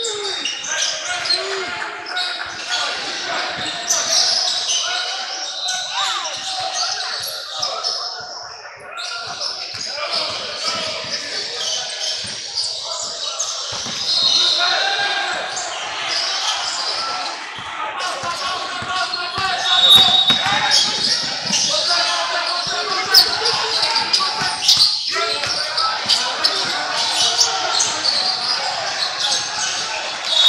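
Basketball game play on a hardwood gym floor: the ball bouncing and hitting the floor, with the voices of players and spectators echoing in the large hall.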